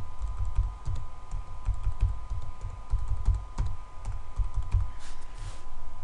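Typing on a computer keyboard as numbers are keyed into a form: irregular keystrokes, heard mostly as dull thuds with light clicks on top.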